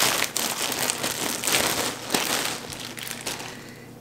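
Clear plastic garment bag crinkling as it is handled and pulled open, the crinkling thinning out toward the end.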